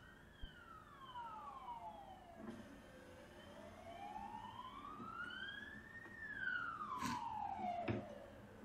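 A siren wailing: its pitch falls slowly for about three seconds, rises for about three, then starts to fall again. Two sharp clicks come near the end.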